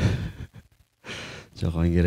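Speech that breaks off about half a second in, a moment of silence, then a breathy sound and a man's voice starting to speak again near the end.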